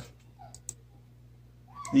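A near-quiet pause with a faint, steady low electrical hum and a couple of faint short clicks about half a second in. A man's voice starts again at the very end.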